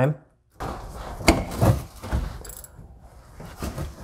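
A ratchet with an extension and 17mm hex socket being worked on a tight transaxle drain plug: a few scattered metallic clicks and knocks over quiet handling noise.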